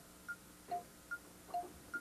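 Game-show board sound effect: short electronic beeps alternating between a low and a higher pitch, about two to three a second, as the chosen location card is searched and revealed.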